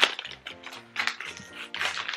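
Background music with a repeating low bass note, over a few short clicks and rattles of small items being rummaged through by hand.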